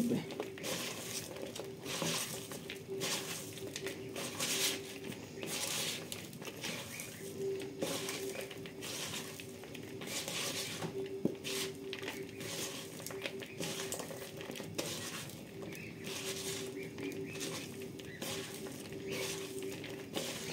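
Shredded raw cabbage and carrot being squeezed and kneaded by hand in a plastic bowl: an irregular, repeated crunching rustle as the salted, vinegared cabbage is worked to soften it.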